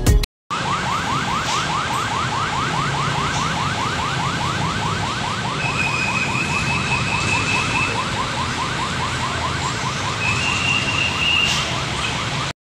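Road traffic noise with an electronic siren warbling in fast, repeated rising sweeps, several a second, throughout. A high steady tone sounds twice, each time for about two seconds, once in the middle and once near the end.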